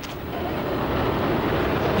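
Jet airliner engines, a rushing roar that grows steadily louder as the plane closes in on the tower.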